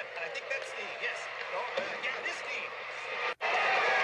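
Hockey play-by-play commentary over arena background noise. The sound drops out for an instant a little over three seconds in and comes back louder.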